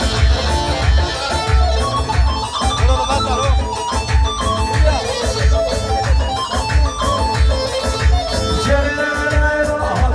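Loud amplified wedding dance music with no singing: an electronic keyboard plays a plucked-string-like melody over a heavy, steady drum beat.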